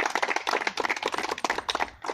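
A small group of people applauding with a dense, irregular run of hand claps.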